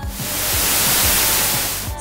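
A two-second whoosh of rushing noise that swells and then fades, used as a transition sound effect, over background music with a steady beat.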